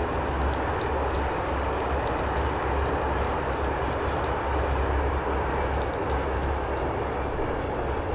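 Steady low rumble of a moving vehicle heard from inside the cabin, with a few faint clicks.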